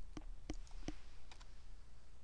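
A few separate clicks from a computer keyboard and mouse, about four in a second and a half, as a cell is selected and an equals sign typed into a spreadsheet.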